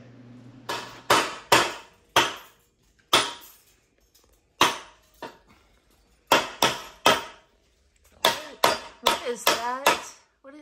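A steel hammer striking a bent metal transmission dipstick clamped in a bench vise to straighten it: about a dozen sharp, irregularly spaced blows with short pauses between, coming faster near the end.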